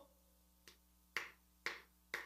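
Four faint, sharp clicks about half a second apart.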